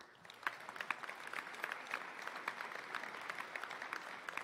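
Church congregation applauding after a worship song: many overlapping hand claps, fairly quiet and steady.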